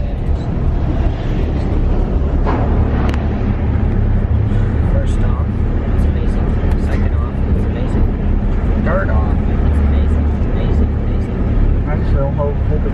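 Car tyres rolling over the open steel grating deck of a truss bridge, a steady low drone heard from inside the car cabin, with a few light clicks.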